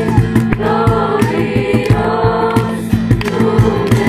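A group of voices singing a worship song together to guitar and a steady percussion beat.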